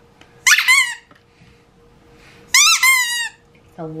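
A squeaky ball dog toy is squeezed by hand and gives two short bursts of loud, high squeaks, about half a second in and again about two and a half seconds in.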